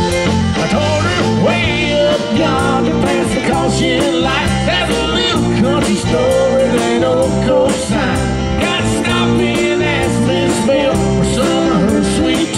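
Live country-rock band playing an instrumental break, with electric guitars, bass and drum kit over a steady beat. A lead line of bending, wavering high notes runs on top.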